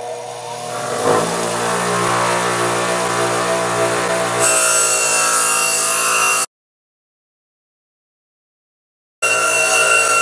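A 6-inch bench grinder's motor running with a steady hum, its wire wheel brushing the cut edges of a punched sheet-metal stove body with a scratchy hiss from about halfway in. The sound cuts out completely for about three seconds, then the hum and brushing come back near the end.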